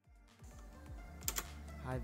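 Faint background music with a soft low drum beat; about a second in, a quick pair of computer keyboard clicks, and a man's voice starts near the end.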